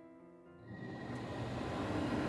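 A 12-volt RV furnace's blower starting up: a rushing air noise that comes in about two-thirds of a second in, builds over about a second, then runs steadily. The thermostat has called for heat and the furnace has come through its start-up delay.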